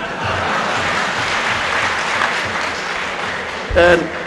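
Audience applauding steadily; a man's voice cuts back in near the end.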